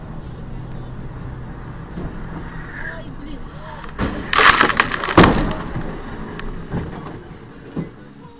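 Head-on car crash heard from inside the car: steady road and engine noise, then a loud smash of crumpling metal and breaking parts about four seconds in, with a second heavy impact about a second later, followed by scattered knocks as the car comes to rest.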